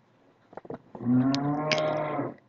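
A man's voice holding a drawn-out hesitation sound, a steady 'ehh', starting about halfway through and lasting over a second, after a few faint clicks.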